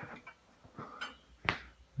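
Quiet room tone with a few light clicks of crockery and cutlery on a laid breakfast table, the sharpest about a second and a half in.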